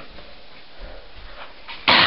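A boy coughs suddenly and loudly near the end, choking on the fizzing baking soda and vinegar foam in his mouth, after a moment of near quiet.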